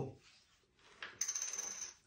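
A small plastic numbered draw disc dropped onto a tabletop. It gives a click about a second in, then rattles with a thin high ring for under a second as it settles.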